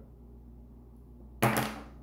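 Quiet room tone with a low steady hum, then one short spoken word about a second and a half in.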